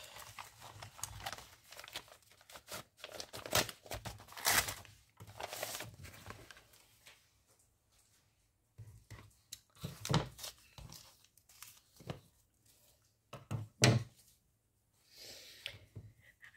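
Plastic magazine wrapping crinkling and tearing as a magazine is unwrapped, through the first six seconds or so. After that, paper rustles and a few soft thumps as the magazine is handled on a wooden table.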